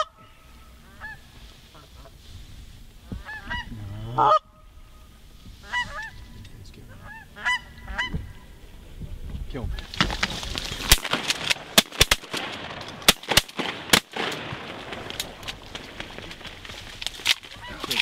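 Canada geese honking, a series of short calls through the first half, broken off abruptly once. In the second half a rustling noise takes over, with many sharp clicks and knocks.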